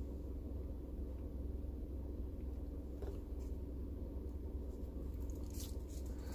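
Faint sipping and swallowing of a hot drink through a coffee cup lid, with a couple of soft mouth sounds. Under it runs the steady low hum of a car cabin.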